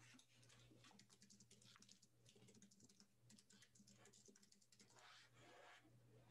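Faint typing on a computer keyboard: quick, irregular soft key clicks over a low steady hum.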